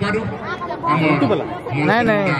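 Voices talking amid the chatter of a spectator crowd.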